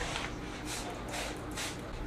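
Hand-held trigger spray bottle squirting water onto dry porridge oats: about four short hissing sprays, roughly half a second apart.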